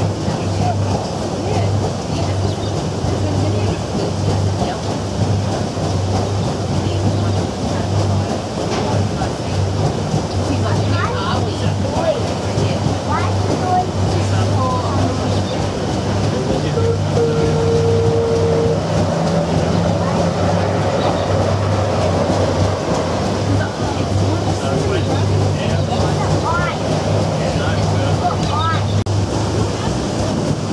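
Paddle steamer's steam engine and paddle wheels running steadily underway, a low, even, rhythmic beat with water churning under it.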